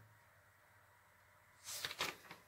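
Near silence, then a brief rustling noise near the end.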